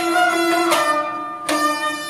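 Instrumental passage of Kashmiri Sufi music: a harmonium holding steady chords, with a rabab and a clay-pot drum. The drum is struck three times, about three-quarters of a second apart.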